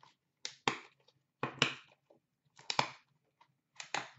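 Trading-card box packaging being handled and torn open, short crinkling, tearing noises in four quick pairs about a second apart.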